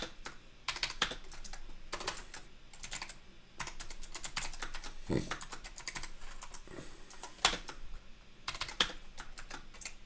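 Typing on a computer keyboard: short runs of keystroke clicks with pauses between them.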